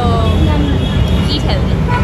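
Street background noise: a steady low rumble, with a voice speaking briefly at the start and again about one and a half seconds in.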